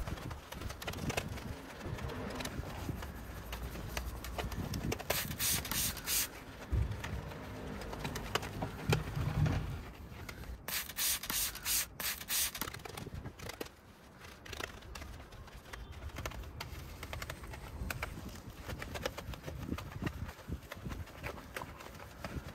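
Soft detailing brush scrubbing through snow foam on car paintwork, badge lettering and grille slats, in quick back-and-forth strokes, with louder stretches of scrubbing about a quarter of the way in and around the middle.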